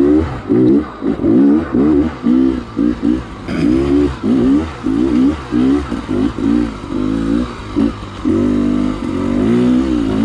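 Dirt bike engine revving up and down in quick throttle bursts, two or three a second, as the rider picks a way up a rocky trail. Near the end it holds a steadier pull for about a second.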